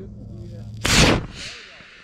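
Model rocket motor igniting on the launch pad with a sudden loud whoosh about a second in, followed by a steady hiss as the motor burns and the rocket climbs off the rod.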